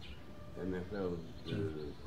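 Speech only: short spoken fragments from a man's voice.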